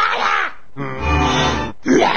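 A cartoon man's voice grunting and growling in three bursts, the middle one longest and steady, over background music.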